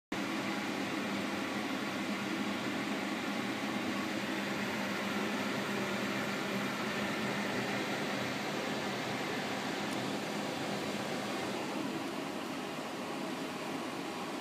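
Steady whir of a running fan or electric appliance, an even noise with a faint low hum that does not change.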